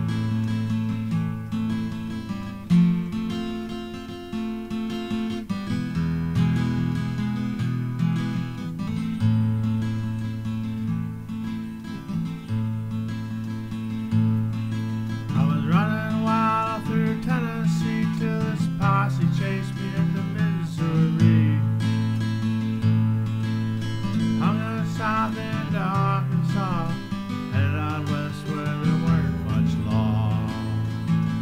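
Acoustic guitar played as an instrumental break: chords strummed over a moving bass line in a country-folk style.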